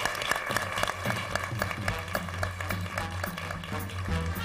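Studio audience applauding, with upbeat closing theme music fading in under the clapping about a second in, carried by a bass line and a steady beat.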